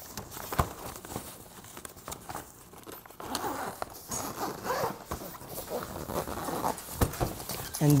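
Zipper of a fabric camping-table carrying bag being drawn shut by hand, with two sharp knocks, one just after the start and one near the end. A faint murmur of voice runs through the middle.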